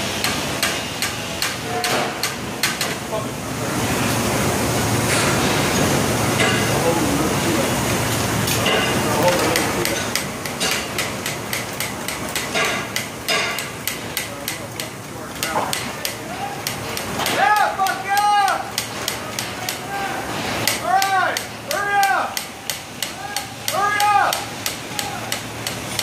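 Steel brace pin installation work: a fast run of sharp metallic clicks and knocks. In the last third come several loud, short, pitched sounds that rise and fall, in groups of two or three.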